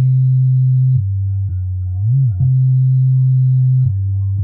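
Early-1990s jungle/hardcore rave track in a breakdown with the drums out: a loud, deep sine-like bass holds one note and steps down to a lower one about a second in. It swoops up and back down in the middle, returns to the higher note, and drops again near the end.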